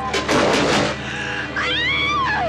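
A sudden loud crash of noise, then from about one and a half seconds in a high-pitched scream that rises and falls.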